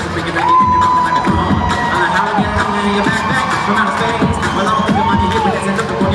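Live beatbox music: a steady beatboxed rhythm over a bass line, with a held high note twice, a long one starting about half a second in and a shorter one near the end, and a crowd cheering.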